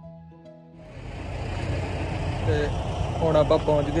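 Soft background music that cuts off abruptly under a second in, replaced by steady outdoor noise, a rumble with hiss, over which a man starts talking about two and a half seconds in.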